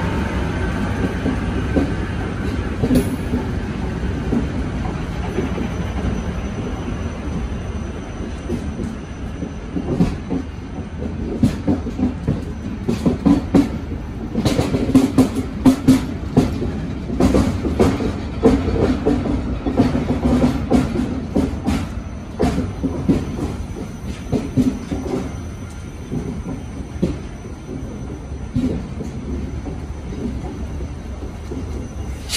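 Snälltåget passenger coaches rolling slowly past: a steady low rumble of wheels on rail with irregular clicks and knocks, busiest in the middle stretch.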